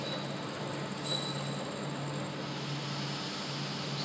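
Milling machine running with a steady hum while its end mill cuts the workpiece, fed toward the marked line.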